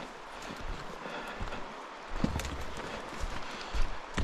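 Footsteps walking down a dirt trail: irregular soft thuds and scuffs over a faint steady hiss.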